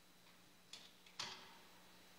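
Two short knocks against near-silent room tone, about half a second apart, the second louder with a brief ring after it.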